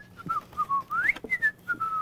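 A man whistling a short, improvised tune with his lips: a string of single notes swooping up and down, then a longer held note near the end.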